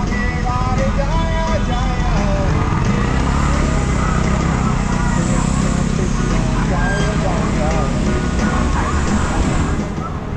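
Steady wind rumble on the bike-mounted camera's microphone and city road traffic while cycling, with a pitched, melodic voice line running over it at times.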